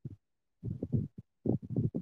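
Muffled, choppy fragments of a man's voice that cut in and out to dead silence between short bursts, as heard over a poor live-stream connection.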